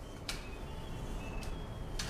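A telescoping tripod stand being extended: a sharp click, a thin squeak as the tube slides, then another click, over a low steady hum.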